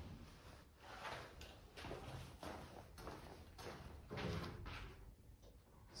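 A run of soft knocks and scuffs, roughly two a second and unevenly spaced: handling or movement noise.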